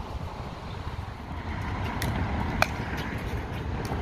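Steady low outdoor rumble with no voices. Two brief sharp pops come about two and a half seconds in, a little over half a second apart.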